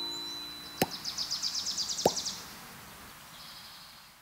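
A closing music chord fading out, then two short plops about a second and a half apart with a rapid, high-pitched chirring trill between them, and a fainter trill near the end.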